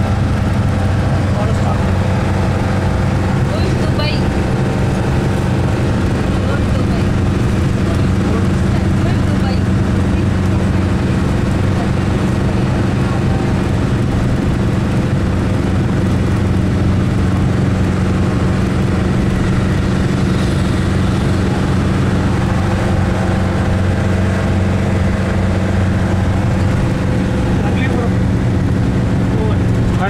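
Steady drone of a vehicle's engine and road noise heard from inside the cabin while driving, a constant low hum.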